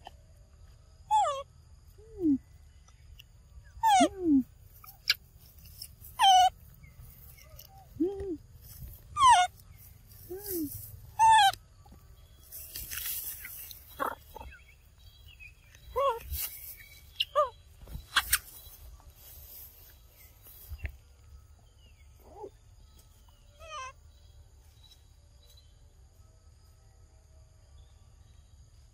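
Young macaques calling: about a dozen short squeals and whimpers, each falling in pitch, some high and thin and some lower. The calls come thick in the first half and more sparsely later.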